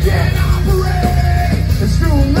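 Heavy rock band playing live: distorted electric guitar, bass and drums, loud and dense, with a yelled vocal line held for about half a second near the middle.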